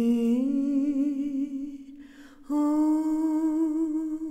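A woman humming a slow wordless melody without accompaniment: a long held note that slides up slightly, a breath about two seconds in, then a second long note with gentle vibrato.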